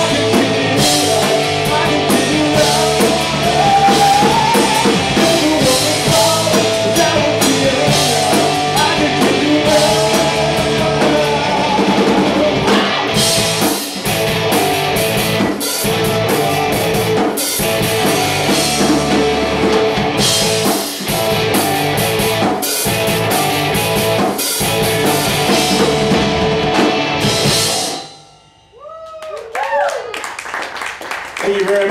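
Live rock band playing: electric guitars, electric bass and a drum kit, with a male voice singing over the first part. The song ends abruptly about two seconds before the end.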